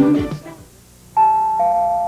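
The last sung note of a TV jingle dies away, and after a short gap a two-note chime sounds: a higher tone, then a lower one held on, like a ding-dong.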